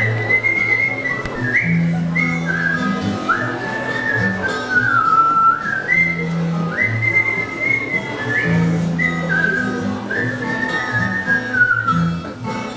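A man whistling a melody into a microphone over a strummed twelve-string acoustic guitar, the whistled notes scooping up into each phrase.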